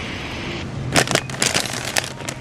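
Steady hiss, then from about a second in a run of sharp crackles: crinkly plastic snack bags of tortilla chips being grabbed off a store shelf.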